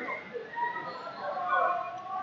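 Faint, distant shouted voices echoing in a large hall.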